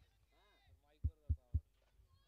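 Three short, dull, low thumps about a quarter second apart in the second half, over faint distant voices.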